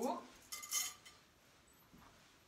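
A brief metallic clinking of small jewelry about half a second in, following the tail end of a spoken word.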